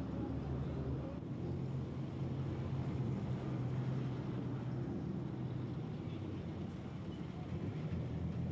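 A vehicle engine running steadily with a low, even rumble.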